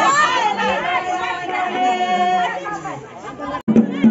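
Several women's voices talking and calling out over one another, with one voice holding a long high note for about a second and a half. The sound cuts out for a moment near the end.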